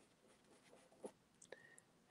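Near silence with the faint scratch of a pastel stick drawing on paper, and two faint ticks a little past the middle.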